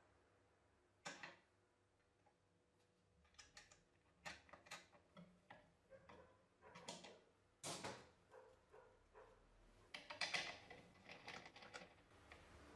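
Faint, scattered clicks and light metal taps of pliers and a screwdriver on small brass crank parts and a nut being fitted, with a quick cluster of taps near the end.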